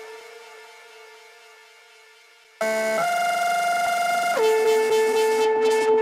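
Electronic indie dance track in a breakdown with the beat gone: a single held synth note fades away. About two and a half seconds in, a loud synth chord cuts back in suddenly, and it shifts to a lower note near the end as hi-hats start to return.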